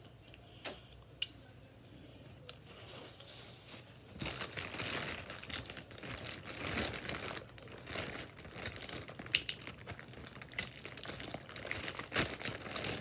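Close crackling and crinkling from about four seconds in: crab legs being cracked and their shells picked apart by hand.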